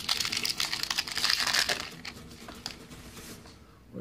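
A foil Pokémon card booster pack being opened by hand: a dense burst of wrapper crinkling for about two seconds, then quieter scattered crackles as the opened pack is handled.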